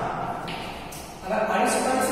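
A man talking, with a pause of about a second in the middle before the speech resumes.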